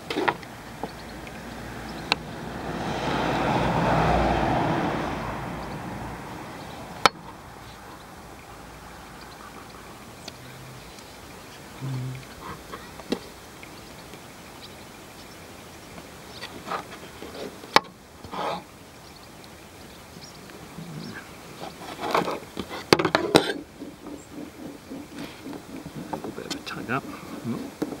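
Eight-strand polyester rope being spliced with a metal Swedish fid: soft rustling of the rope with a few sharp clicks, and a cluster of rustles late on. A few seconds in, a broad rushing noise swells and fades over about five seconds.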